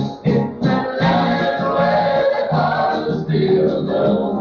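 Several voices singing a song in harmony over instrumental accompaniment with a steady bass line, heard as a recording on cassette tape with the highs cut off.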